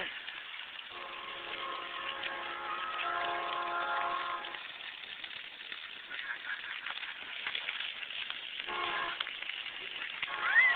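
Splash pad water jets spraying, a steady hiss of water. From about a second in until about four and a half seconds, and again briefly near the end, a held chord of several steady tones sounds over it.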